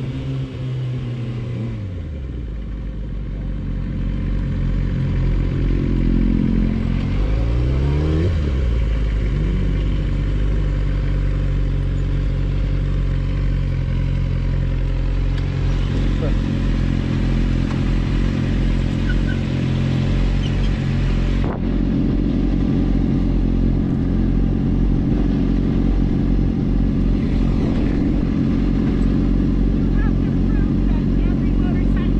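Sport motorcycle engine heard from the rider's helmet camera. The pitch falls over the first couple of seconds as the bike slows, a few revs rise and fall a few seconds later, and from about halfway through the engine settles into a steady idle as the bike comes to a stop.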